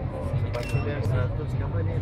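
Indistinct voices of several people talking close by, with a couple of short, sharp clicks about half a second in.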